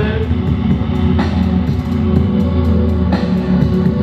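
Loud live rock music: guitar and drums playing an instrumental stretch with no singing, with sharp drum hits about a second in and again near the end.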